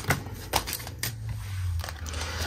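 A deck of oracle cards being shuffled by hand: a soft rustle of cards sliding against each other, with several sharp clicks as the cards snap and tap together.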